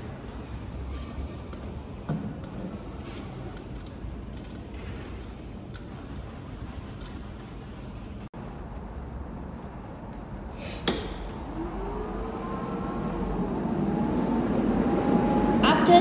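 Small clicks of cable connectors being fitted to an orbital welding power source, then a sharp click about eleven seconds in. After it a machine hum with wavering pitch grows steadily louder toward the end as the welder starts up.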